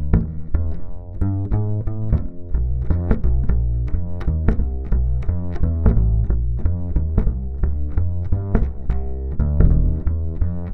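Upright double bass played pizzicato, a quick unbroken run of plucked notes with strong low end. It is heard direct, not through a microphone: from an Underwood piezo pickup, with only the treble-side element left under the bridge, into an A-Designs KGB-1TF preamp.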